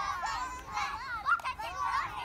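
Young children's voices calling out and chattering, high-pitched and overlapping.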